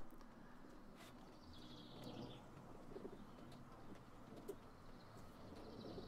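Near silence: faint workshop room tone with a few light clicks, and faint high bird chirping twice, about a second and a half in and again near the end.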